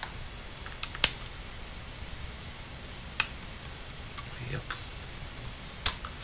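Sharp clicks and taps of small hard parts being handled inside an opened netbook: four in all, the loudest about a second in and just before the end.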